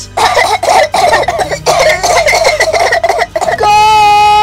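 A person coughing and spluttering in a rapid, ragged string for about three seconds, followed near the end by a held musical tone.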